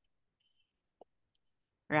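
Near silence with one short, faint click about halfway through, before a voice resumes at the end.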